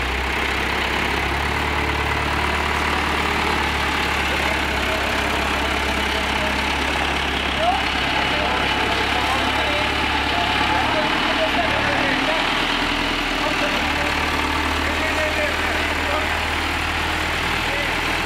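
Diesel engine of an older John Deere farm tractor running steadily at low revs, its low note shifting briefly about eleven seconds in.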